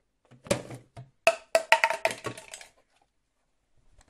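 Hard plastic food container knocking and clattering against a hard surface: a quick run of sharp knocks, some with a short hollow ring, starting about half a second in and thickest between about one and a half and two and a half seconds.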